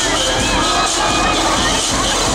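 Audience cheering and shrieking over loud dance music played through stage speakers.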